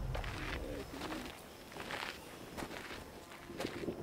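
Footsteps of two people walking on a stony dirt path, soft irregular crunching steps.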